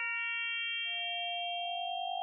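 Synthesized sine tones from Kyma's polyphonic harmonic buttons, played from an iPad controller: a chord of pure harmonics held together, the lower ones dropping out one after another. Just under a second in, a new lower tone enters and slides slowly upward.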